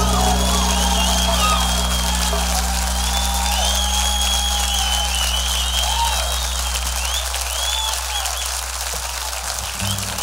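Concert audience applauding, cheering and whistling at the end of a song, while the band's last sustained chord fades out over the first several seconds.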